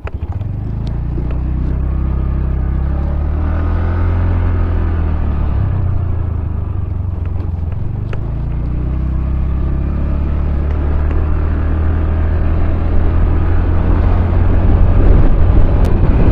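TVS Ntorq 125 scooter's single-cylinder engine running under way, its note rising and falling with the throttle, growing louder toward the end.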